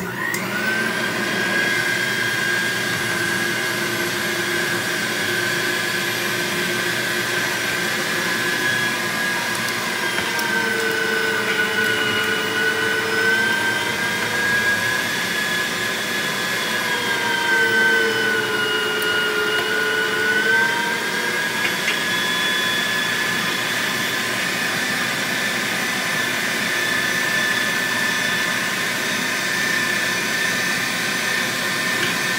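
Electric meat grinder starting up and running steadily with a motor whine while grinding partly frozen thick-cut bacon through its plate. The pitch of the whine sags a little for several seconds midway, then recovers.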